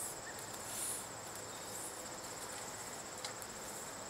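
Steady, high, fast-pulsing chirring of insects, with a soft sliding rustle from the fiberglass measuring tape being pulled hand over hand up out of the well casing and a faint tick a little past three seconds.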